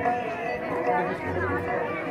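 Crowd of many people talking at once: a steady babble of overlapping voices.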